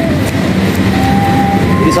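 A motor running with a steady low drone, over the background noise of a busy workplace.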